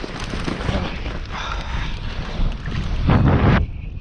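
Wind rushing over an action camera's microphone together with feet running through snow, as a tandem paraglider pair runs for takeoff. The noise cuts off suddenly near the end as they leave the ground.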